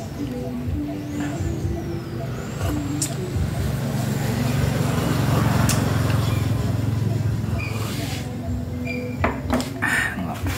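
A motor vehicle passing close by: its engine hum swells to a peak about halfway through and fades away near the end, with a few sharp clicks along the way.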